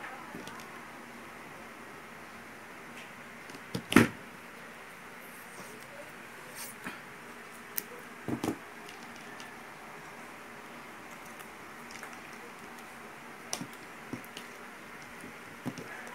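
Scattered clicks and knocks of hands handling small wired parts and tools on a tabletop board, with one sharp knock about four seconds in and a cluster of taps near the middle and the end.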